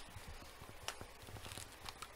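Faint handling noises from a cheap spring airsoft pistol: light clicks and rustling as it is held and moved, with a sharper click about a second in and another near the end.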